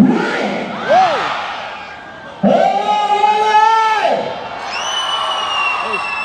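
Large concert crowd cheering and shouting. A short shout rises and falls about a second in, a long held shout comes about two and a half seconds in, and a high, steady call is held near the end.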